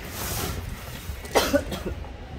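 A hard plastic tool case is slid over cardboard and opened, with a short sharp burst about one and a half seconds in.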